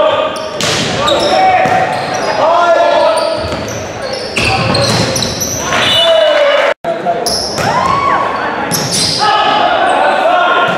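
Volleyball rally in a gym: several sharp hits of the ball, with players and spectators shouting and calling over one another, all echoing in the large hall.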